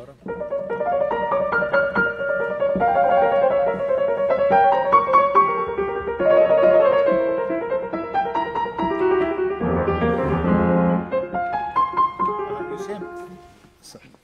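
Grand piano played solo: a quick running passage of sixteenth notes, with a heavier run of low notes about ten seconds in, then dying away near the end. It is played with some notes missing.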